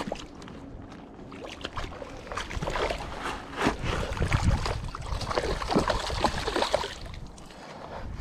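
A hooked trout thrashing and splashing at the surface of shallow water as it is pulled in to the bank: a run of irregular splashes that builds about a second and a half in and dies away near the end, over a low wind rumble on the microphone.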